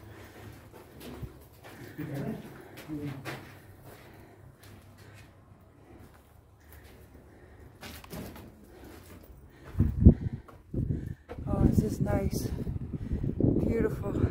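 Quiet stone-chamber room tone with faint voices. From about ten seconds in, loud irregular wind buffeting on the microphone as the open air is reached, with a brief voice near twelve seconds.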